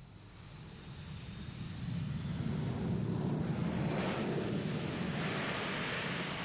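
Jet engines of a Boeing 727 running at high power as the aircraft rolls along the runway, a steady roar that builds over the first two seconds and then holds, with a faint high whine.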